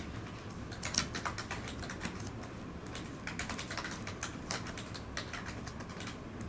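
Typing on a computer keyboard: irregular keystrokes, several a second, with a sharper click about a second in.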